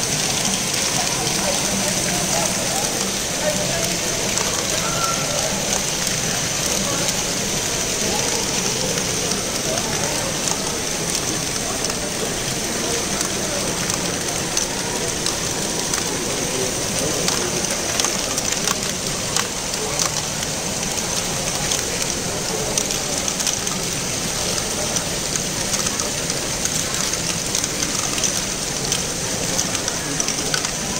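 Many LEGO Great Ball Contraption modules running at once: a steady dense rattle and clatter of small plastic balls tumbling through Technic lifts and chutes, with motors and gears running and many scattered sharp clicks.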